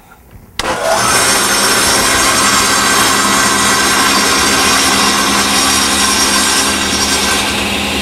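A table saw fitted with a thin-kerf carbide blade is switched on about half a second in and runs steadily at full speed, a loud, even motor hum and blade whine.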